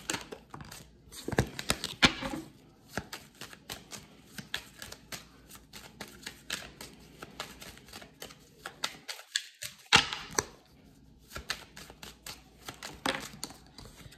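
A deck of tarot cards being shuffled by hand: a rapid, irregular run of soft clicks and slaps as the cards strike and slide over each other.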